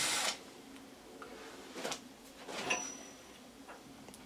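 A Metabo cordless drill running briefly with a sharpened twist bit cutting into steel, stopping about a third of a second in. Then a few faint, light clicks, as metal chips are handled.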